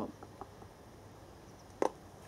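A few faint taps, then one sharp click about two-thirds of a second before the end, as the plastic funnel and sample tube are handled.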